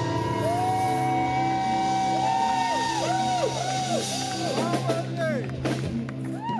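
Live band holding a sustained keyboard-and-bass chord while the singer holds one long note, then sings a string of quick rising-and-falling vocal runs as the song ends.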